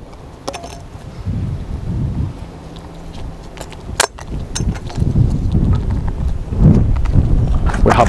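Freshly lit logwood fire just catching, with a sharp pop about four seconds in and a few fainter pops, over a low rumble.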